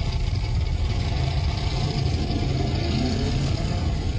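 Car engine sound effect running steadily through a concert PA, heard in a loud, rumbling live audience recording.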